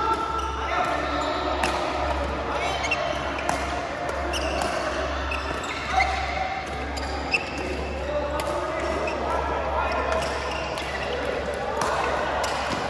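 Badminton rackets striking a shuttlecock in a doubles rally: sharp hits roughly every one to two seconds, the loudest about six and seven seconds in, with shoe squeaks on the court floor in between. The hits echo in a large hall.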